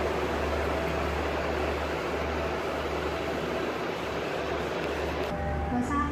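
Busy railway station platform ambience: a steady wash of noise over a low hum. About five seconds in it gives way to a steadier hum with a few held tones.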